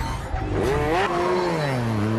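Motorcycle engine revving hard, its pitch climbing about half a second in and then falling away and settling lower.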